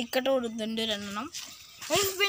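A voice drawn out on one long, slightly falling note for just over a second, then a short lull.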